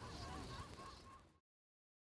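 Faint outdoor ambience with repeated bird calls, fading out and cutting to silence about one and a half seconds in.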